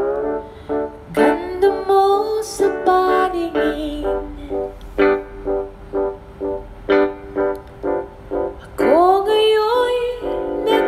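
Acoustic guitar playing a slow ballad accompaniment, chords plucked in a steady pulse about twice a second, with a woman singing sustained, gliding phrases over it.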